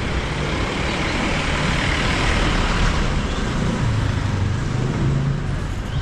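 Street traffic noise: a motor vehicle's engine running in the street under a steady rush of noise, swelling slightly partway through.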